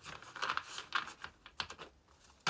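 A deck of tarot cards being shuffled by hand: a quick run of small flicking clicks through the first second, thinning to a few scattered ticks.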